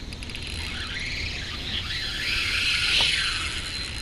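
Spinning reel's drag screaming as a hooked bull shark runs and pulls line off a light rod. The pitch climbs from about a second in, is highest around three seconds, then drops.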